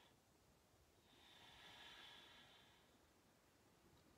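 Faint long out-breath through the nose, swelling and fading over about two seconds in the middle: the second of two long exhale strokes in a paced breathing exercise.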